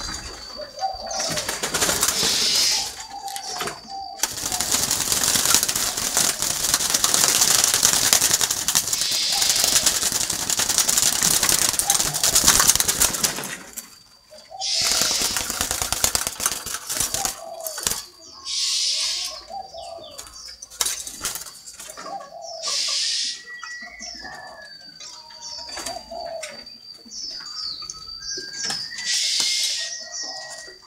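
Caged doves cooing in short low calls, repeated several times, with a long stretch of wing flapping and rustling for about ten seconds in the first half of the clip. Faint high chirps come near the end.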